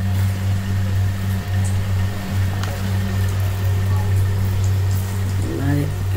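A steady low hum, with faint voices and music in the background.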